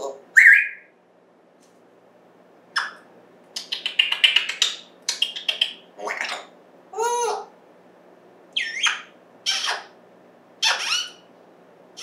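African grey parrot giving a string of short separate vocalisations: squawks, a quick rattle of clicks and a few whistled calls that loop up and down in pitch, about one burst every second.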